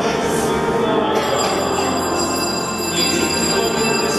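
Church organ holding sustained chords, made of many steady tones from low to very high, with shrill high tones joining about a second in.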